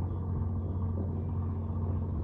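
Steady low rumble and hum of a fishing boat's engine running at idle, with no change in pitch.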